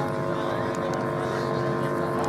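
A steady mechanical drone: a constant hum of several held tones over a low rumble, with a few faint clicks.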